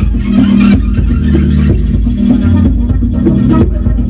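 Live electronic music from a Eurorack modular synthesizer: a bass line that steps between held low notes about once a second, under a steady repeating tone, with short percussive hits.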